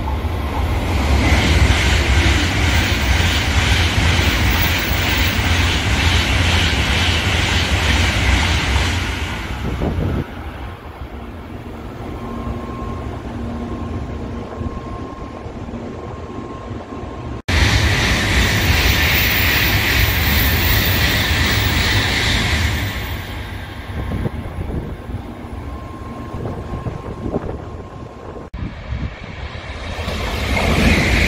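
Shinkansen N700-series trains passing station platforms: a loud, steady rushing roar that lasts about ten seconds, dies down, then breaks off suddenly, followed by a second loud rushing pass of about five seconds that fades again before another abrupt break, with a third train starting to build near the end.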